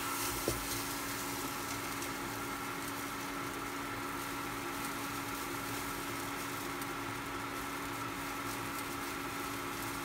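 Food sizzling gently in a nonstick wok on an induction cooktop, over a steady hum. A wooden spatula knocks the pan once about half a second in.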